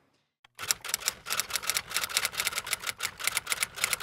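Typewriter key-click sound effect: a quick, steady run of about six strokes a second, starting about half a second in, marking on-screen letters being typed out one by one.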